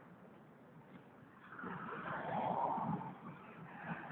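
Road traffic noise: a vehicle's tyres and engine swell as it passes on the road, loudest about two and a half seconds in, then fade.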